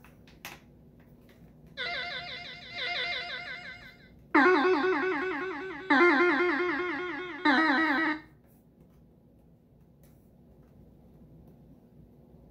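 Castle Toys Superstar 3000 electronic toy guitar playing warbling, vibrato-laden synthesizer notes through its small built-in speaker: a higher note about two seconds in, then three lower notes about a second and a half apart, each starting sharply and fading.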